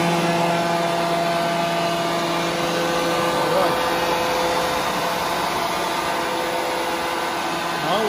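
Corded electric leaf blower running steadily, its motor a steady whine over a rush of air, blowing straight up through a long upright tube.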